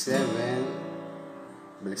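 Acoustic guitar with an A7 chord strummed once, ringing and slowly fading; another chord is struck just before the end.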